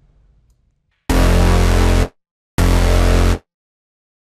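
Synth bass patch from the refX Nexus plugin sounding the same note, F, twice: once for about a second and then a little shorter. Each note cuts off abruptly, as they are previewed while being placed in the piano roll.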